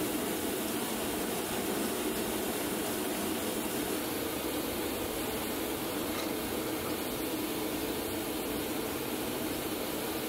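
Steady, even roar of a running blacksmith's forge, with no hammer strikes.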